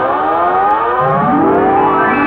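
Siren-like sound effect in a film soundtrack: stacked tones sweep slowly upward in pitch, with a second, lower sweep rising in about a second in and levelling off.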